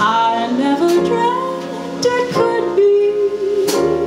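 A small jazz band playing a slow ballad: plucked upright bass under a gliding melody line, which settles into a long note held with vibrato in the second half.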